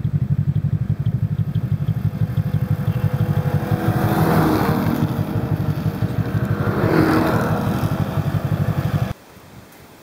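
Snowmobile engines running with a steady, rapidly pulsing drone, swelling louder twice, about four and a half and seven seconds in, as sleds pass. The sound stops abruptly about nine seconds in.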